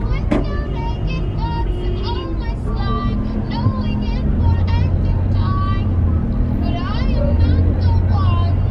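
A car runs in slow traffic, heard from inside the cabin, with a low rumble that grows stronger about halfway through. Over it plays music with a voice.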